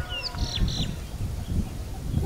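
A small bird gives a few short, high chirps within the first second, over a low, uneven rumble of wind on the microphone.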